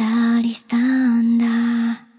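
A woman's voice singing softly in a Japanese pop ballad, holding two long notes with a brief break about half a second in. The last note stops just before the end.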